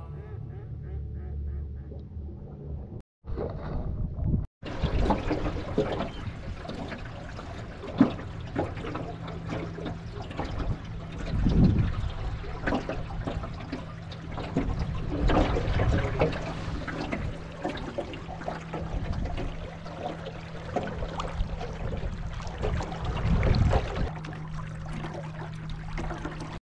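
Lake water lapping and splashing against the hull of an aluminum jon boat under way, over a steady low motor hum. There are a few louder knocks, and the sound cuts out twice briefly about three and four and a half seconds in.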